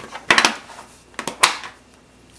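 Small metal tin box being handled and its lid pulled open: light metallic clicks and clatter, in two short clusters about a second apart.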